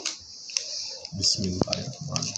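Fingers handling and pressing a handmade paper card, making a run of light, irregular clicks and taps of paper.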